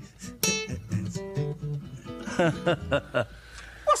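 Two nylon-string acoustic guitars playing together, with plucked notes and a sharp strummed chord. The playing ends about halfway through, and voices follow.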